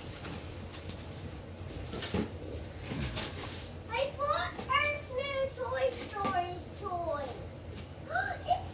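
Wrapping paper crinkling and tearing as a toddler unwraps a present. From about halfway through, the young child makes high-pitched babbling sounds without clear words.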